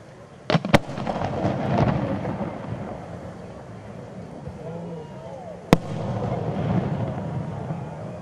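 Fireworks shells bursting: two sharp bangs about half a second in, close together, and a third near six seconds, each followed by a long rolling rumble.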